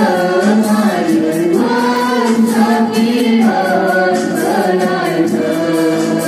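A congregation singing a Christian hymn together, many voices in unison over a steady beat.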